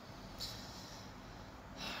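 A man breathing through his nose between sentences: a soft airy hiss lasting about a second and a half, with another breath starting near the end.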